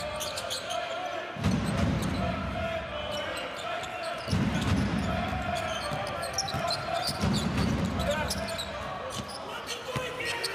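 Basketball game in a large hall: a ball bouncing on the hardwood court and short sneaker squeaks. Under them are crowd voices, with low surges of crowd noise about every three seconds.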